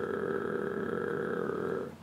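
A man holding a steady, gargle-like growl deep in the back of his throat, tongue pulled back: the throat-resonance starting position for an English R. It stops near the end.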